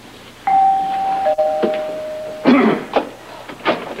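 Two-note doorbell chime, a higher note followed by a lower, held 'ding-dong', then a few brief indistinct words.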